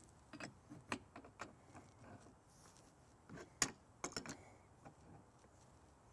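Faint, scattered metallic clicks and light knocks of steel wrenches working on a hydraulic quick coupler's fitting as it is tightened, the sharpest click a little past halfway.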